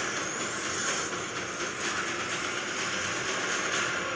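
Movie-trailer sound design: a loud, steady rushing whoosh with a faint rising whistle in it during the first second.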